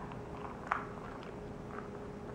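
A person drinking juice from a glass: one short, sharp drinking sound about three quarters of a second in, over a faint steady hum.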